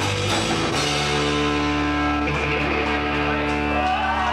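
Live rock band playing: electric guitar with drum kit. About a second in the drum hits stop and a sustained guitar chord rings on.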